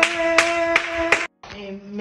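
Hands clapping in a steady beat, about two and a half claps a second, over voices holding a long note. The sound cuts off abruptly a little over a second in, followed by a quieter held voice.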